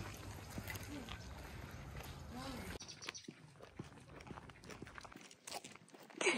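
Faint outdoor background of distant voices and scattered footsteps, over a low rumble that drops away about three seconds in.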